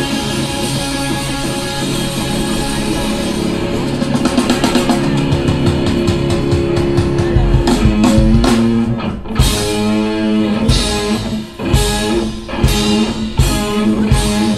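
Live rock music from an electric guitar and a drum kit. For the first few seconds the guitar chords are held. From about four seconds in the drums come in with fast strokes, and from about the middle the band plays short stop-start hits.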